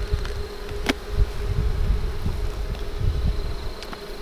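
Honey bees buzzing in a steady hum around an open nuc box, with one sharp click a little under a second in as a metal hive tool works at the wooden frames.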